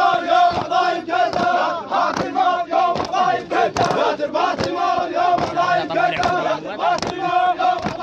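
A crowd of men chanting an Iraqi tribal hosa together, a loud rhythmic shouted refrain in a mourning style, with sharp hits scattered through it.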